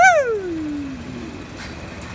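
A man's loud wordless vocal cry that starts high and slides steadily down in pitch over about a second, then trails off.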